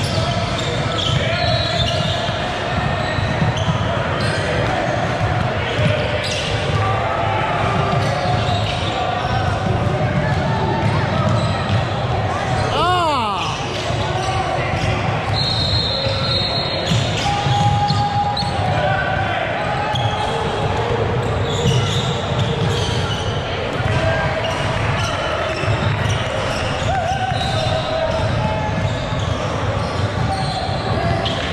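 Basketball dribbled on a hardwood gym floor, repeated bounces under a steady hubbub of voices from players and spectators, echoing in a large gymnasium.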